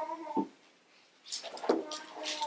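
A man's voice trailing off, a short pause, then soft rustling of thin Bible pages being leafed through and a man clearing his throat near the end.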